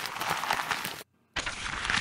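A hiss-like noise sound effect under a video transition, which breaks off about a second in and starts again after a short gap.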